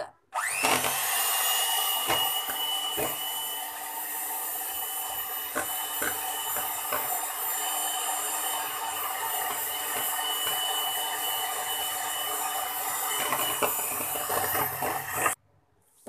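Electric hand mixer starting with a rising whine, then running steadily as its twin beaters cream a block of butter in a plastic bowl, with a few sharp ticks of the beaters against the bowl. It switches off suddenly shortly before the end.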